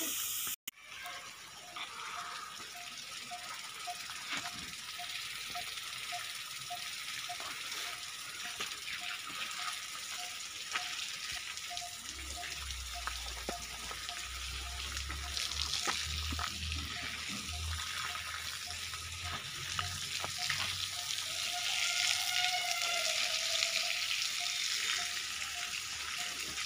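Steady hiss of running water, with a faint note repeating about twice a second throughout. A low rumble comes and goes in the middle.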